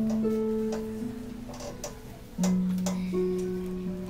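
Solo harp: slow plucked notes that ring on and fade, with a louder low note struck about two and a half seconds in.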